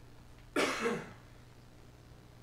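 A man clears his throat once into a close microphone, about half a second in: a short rough burst with a brief voiced tail. A faint low hum runs underneath.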